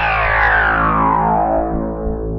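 Closing music: a sustained, distorted electric guitar chord ringing on, with a sweep that falls steadily in pitch.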